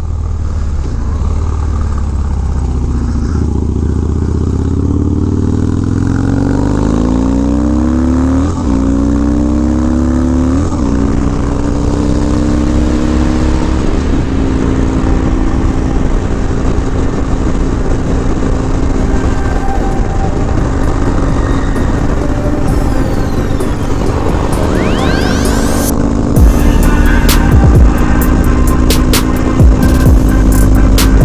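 Harley-Davidson V-twin motorcycle engine pulling up through the gears, its pitch rising and then dropping back at each shift, then running at a steady highway cruise. Music plays along with it, and it gets louder near the end.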